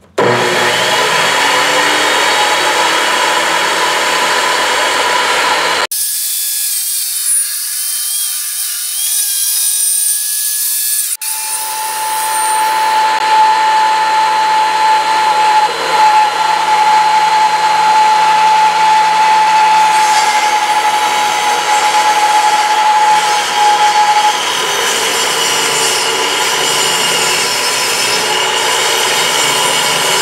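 Ryobi benchtop table saw running with a steady whine while OSB boards are ripped into 9-inch-wide strips. The sound starts abruptly right at the start and changes sharply about 6 and 11 seconds in.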